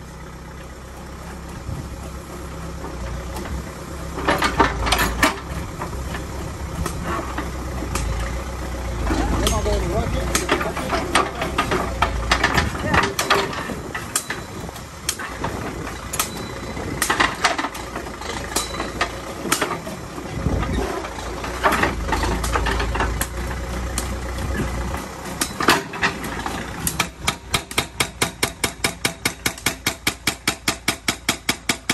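Backhoe loader's diesel engine running with a hydraulic breaker hammer working into rock, with irregular knocks and scraping from the chisel and rubble. Near the end the breaker settles into rapid, even hammering.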